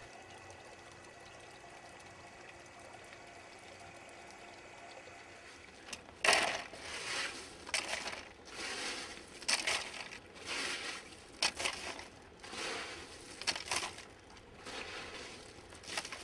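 Water running steadily and faintly from a PVC return pipe into a holding tank. From about six seconds in, gloved hands scoop and spread wet lava rock in a plastic crate tray, giving a run of short scrapes of rock on rock and plastic about once a second.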